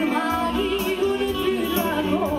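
A woman sings a Korçë serenade live into a microphone, her melody bending with quick wavering turns, over electric guitar and keyboard accompaniment.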